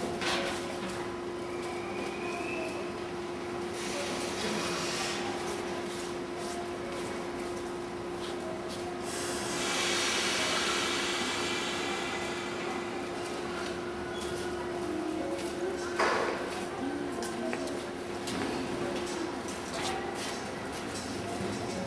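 JR East 115 series electric train at a station platform after its doors close, then starting to pull out: a steady hum, a burst of compressed-air hiss about halfway through, and a sharp knock a few seconds later.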